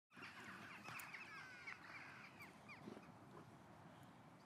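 Faint chirping of several small birds, a quick run of short sweeping calls that is busiest in the first two seconds and thins out after about three.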